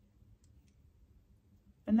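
Near silence: faint room tone with two tiny clicks about half a second in. A woman's voice starts speaking near the end.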